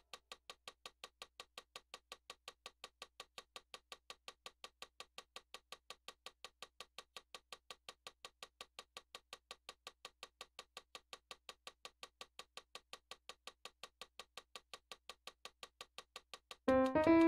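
Faint, steady ticking, evenly spaced at about five ticks a second, in near silence.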